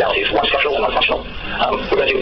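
A person talking continuously, with no other sound standing out.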